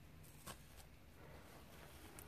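Near silence, with a faint short scrape about halfway through: a fingertip raking through a brick mortar joint that rising-damp salt has turned to loose, crumbling dust.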